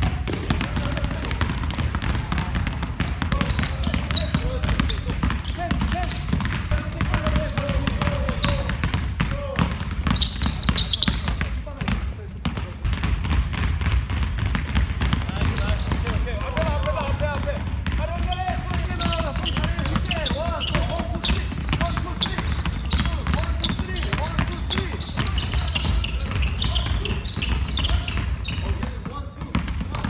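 Several basketballs being dribbled at once on a wooden gym floor: a dense, irregular patter of bounces that goes on without a break.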